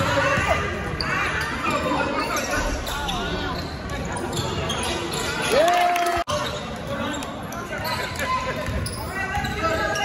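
Basketball being dribbled on a hardwood gym floor during play, with players and spectators calling out, echoing in a large gym.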